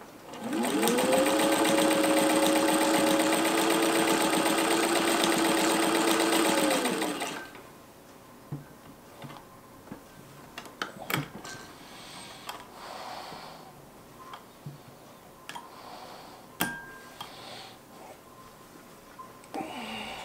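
Singer 15-91 sewing machine with its potted motor spinning up and sewing steadily through eight layers of heavy felt for about seven seconds, then winding down. Afterwards come a few sharp clicks and quieter handling of the machine and fabric.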